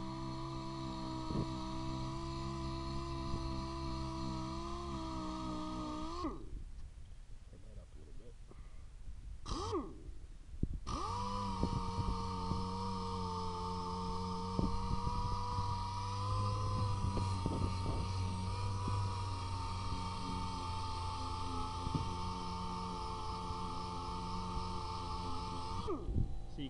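Dual-action sander with an 80-grit disc sanding rust and paint off a car's steel body panel, making a steady whine. It stops about six seconds in, runs briefly near ten seconds, then runs steadily again.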